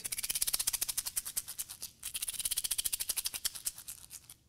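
Homemade plastic-egg shaker, taped shut and filled with fish gravel, shaken rapidly in a fast, even rattle of many strokes a second, like a lawn sprinkler, with a brief break about halfway.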